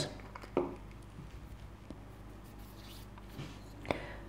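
Quiet handling noises of a leather piece and a wooden burnisher on a work mat, with a light click just before the end.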